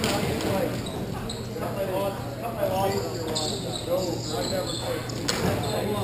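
Hockey players calling out to each other in a large rink, with the clatter of sticks and play around the net. A sharp knock sounds a little after five seconds in.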